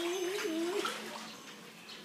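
A high, wavering hummed voice for about the first second, over light splashing of shallow water as a toddler crawls through an inflatable paddling pool.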